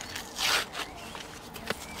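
A small red sweetener pack being handled, with one short rasping rustle about half a second in and a few faint clicks.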